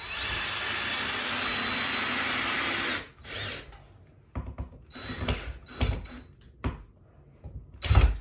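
Cordless drill-driver running steadily for about three seconds, driving a screw into a sheetrock ceiling patch, then a brief second burst. After that come short, irregular knocks and bumps.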